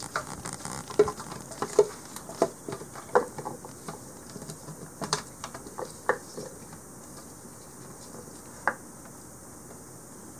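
Silicone spatula scraping and tapping against a glass bowl and plastic food-processor bowl as whole garlic scapes are pushed in and drop into it: a run of irregular light clicks and taps, thinning out after about six seconds, with one last tap near the end.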